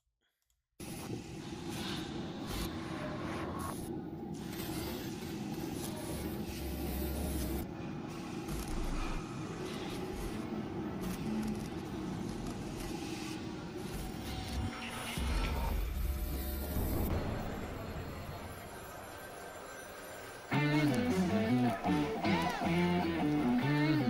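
Music video soundtrack playing: a quieter, noisy intro with a few low rumbles, then the song comes in loudly with guitar about twenty seconds in.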